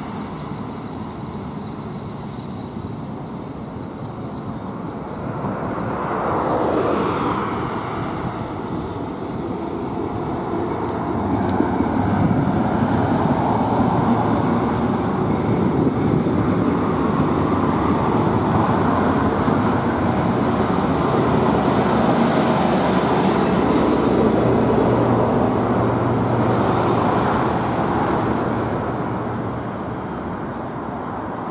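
Steady street traffic noise from motor vehicles passing on the road, growing louder about halfway through and easing off near the end.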